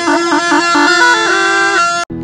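Tarpa, a tribal wind instrument made of a long dried gourd with a flared bell, played with a steady drone under a quick, shifting melody that settles onto a held note in the second half.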